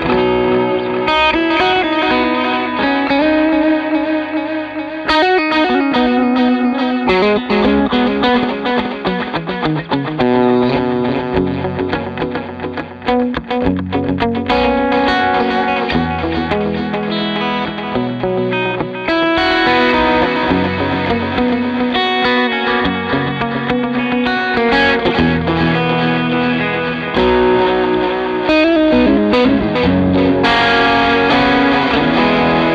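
Electric guitar played through an analog delay pedal, picked notes followed by trailing echo repeats. The tone brightens and dulls again several times.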